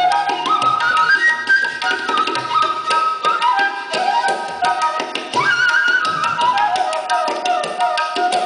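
Bamboo flute playing an ornamented melody with slides between notes, accompanied by rapid tabla strokes.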